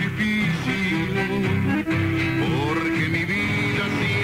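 A chamamé recording playing: accordion with guitar accompaniment in a steady, continuous band sound.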